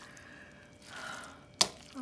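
Soft, wet squishing of a hand mashing a moist salmon, egg and cornmeal patty mixture in a metal pot. One sharp click about one and a half seconds in.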